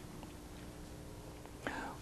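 Quiet room tone with a faint steady hum. Near the end comes a soft click and a short breathy sound, a breath drawn just before speech resumes.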